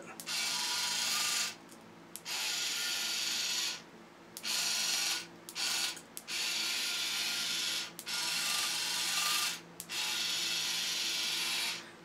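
Small gear motor and metal gear train of a modified Tomy Dingbot toy robot running in short bursts as remote buttons are pressed, with the ratchet pawl clicking. It starts and stops about seven times, most runs a second or two long and a couple very brief.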